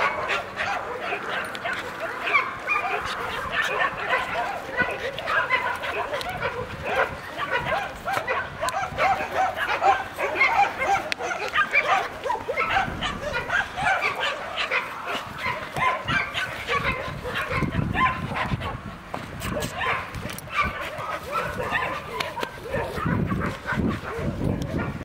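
A young dog whining and yipping in a continuous run of short, high calls, excited during rough play.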